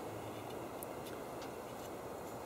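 Quiet steady outdoor background hiss with three or four faint light clicks as a steel chainsaw bar is handled.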